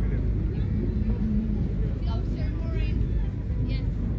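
Steady low rumble of outdoor background noise, with faint voices in the distance.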